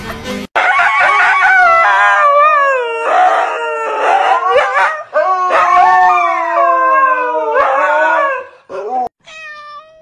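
A dog howling in a long series of drawn-out howls that glide up and down in pitch, breaking off about a second before the end.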